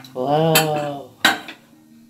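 Metal pressure cooker and its lid being handled: a short metal-on-metal scraping groan, then one sharp clank with a brief ring as the lid is set down.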